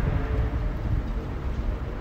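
A steady low rumble with a faint hiss over it: the background noise of the recording, heard between spoken phrases.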